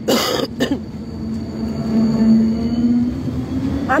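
A man clears his throat and coughs twice, then a tram's steady electric hum, swelling a little in the middle.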